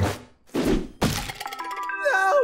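Cartoon sound effects: a short noisy rush, then a sharp thud about a second in as a character crashes onto the floor. A few held musical notes follow.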